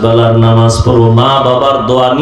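A man's voice delivering a Bangla waz sermon in a chanted, sung style, drawing the words out into two long held notes with a short break just under a second in.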